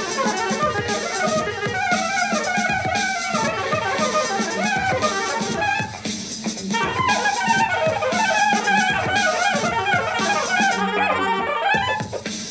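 Soprano saxophone playing a smooth-jazz improvised melody over a backing track with a steady drum beat, with a short break in the line about six seconds in.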